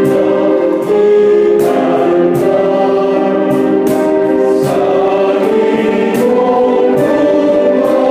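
Unaccompanied men's choir singing a gozos, a devotional hymn, in sustained chords that move to new harmonies about a second in and again about five and a half seconds in.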